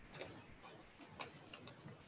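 A few faint, short clicks at irregular intervals, about half a dozen over two seconds, the clearest a little after the start and about a second in.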